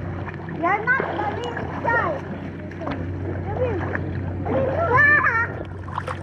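Children splashing in a swimming pool, their high voices calling out several times, loudest about five seconds in, over a steady low hum.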